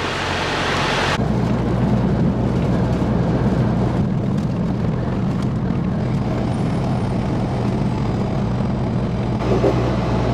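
Steady drone of a semi-truck's diesel engine and road noise inside the cab while driving on the highway. It opens with about a second of wind hiss that cuts off abruptly.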